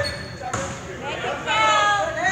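Basketball being dribbled on a hardwood gym floor, with voices from players and the crowd echoing through the gym.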